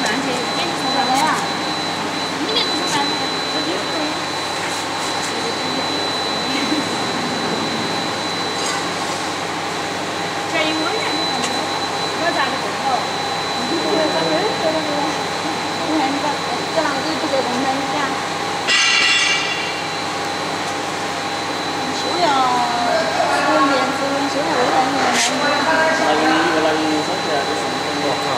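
Roll sublimation heat press running: a steady mechanical drone with a constant high-pitched whine. Voices talk in the background, and a short shrill sound cuts in about two-thirds of the way through.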